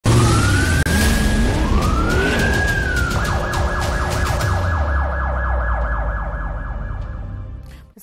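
Police siren sound effect over a low drone. Two rising-and-falling wails are followed, from about three seconds in, by a fast warbling yelp, and it all fades out near the end.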